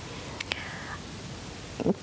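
Quiet studio room tone with a soft breath and a faint click about half a second in; a voice starts just before the end.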